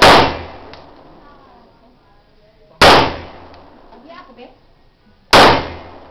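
Three loud, sharp bangs about two and a half seconds apart, each ringing out and dying away within about a second.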